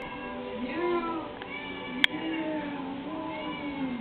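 An elderly domestic cat meowing: a shorter meow about half a second in, then a long drawn-out meow that runs almost to the end. A single sharp click comes about halfway through.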